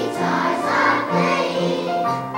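A choir of young children singing together.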